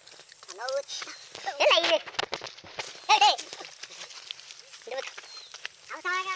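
Children's short, high-pitched exclamations: four or five brief calls a second or so apart, with faint clicks and rustling between them.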